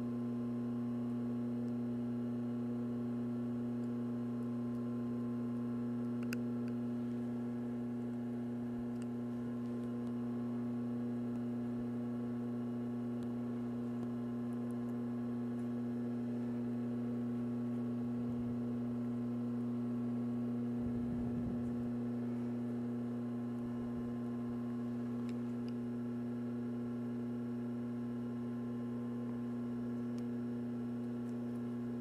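Steady electrical hum, with its strongest tone near 240 Hz over a lower band near 120 Hz, running under the whole stretch. A couple of faint clicks, about six seconds in and again near the end, come as needle-nose pliers work the metal stop on a zipper.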